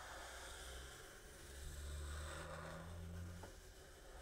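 Faint scratch of a fat felt-tip marker (Sharpie) drawing a long curved line on sketchbook paper, over a low steady hum.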